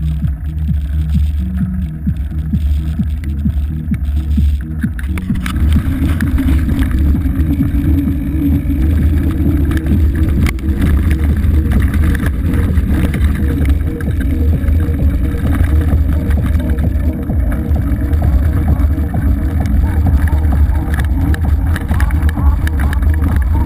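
Electronic music for the first few seconds, then the noise of a mountain bike ridden over a gravel trail, heard from a camera mounted on the bike: a steady deep rumble of wind on the microphone and tyres on loose stones, with constant small rattles of the bike.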